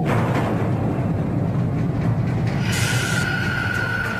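Dark, tense soundtrack music with a heavy low rumble that comes in abruptly. A steady high tone and hiss join about two-thirds of the way through.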